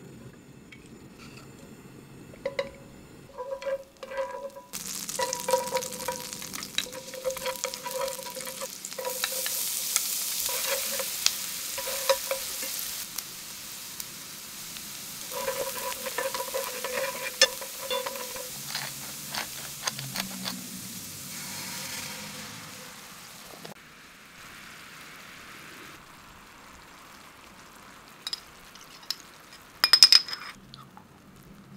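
Minced garlic and dried pepperoncino sizzling in olive oil and butter in a frying pan, stirred with metal chopsticks that clink and make the pan ring. The sizzle starts about five seconds in, is loudest around the middle and drops away abruptly about two-thirds of the way through.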